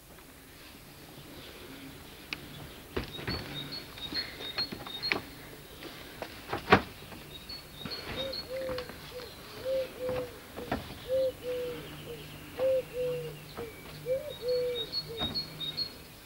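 Knocks and thumps of feet on a wooden shed's corrugated roof and loose boards, the loudest a sharp knock about seven seconds in. Small birds chirp in repeated high pairs of notes behind them. From about halfway a run of short, lower pitched notes joins in.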